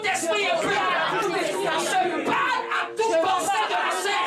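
Speech: a man praying aloud into a microphone, with other voices speaking at the same time.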